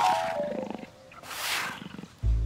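Cartoon lion vocal effect: a weary moan that falls in pitch, then a long breathy sigh.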